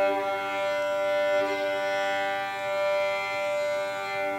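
Violin, viola and cello of a piano quartet playing classical chamber music together, holding long notes as a chord.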